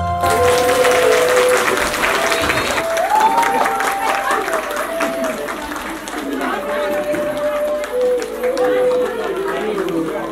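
An audience applauding, many hands clapping together, with a voice heard over the clapping.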